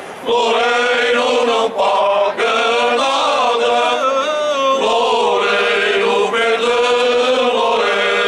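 A men's choir singing Alentejo cante unaccompanied, in slow, held phrases with short breaks between lines.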